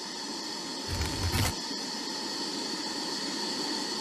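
A steady, hiss-like drone with faint held tones from the title sequence's soundtrack, with a brief low thump and click about a second in.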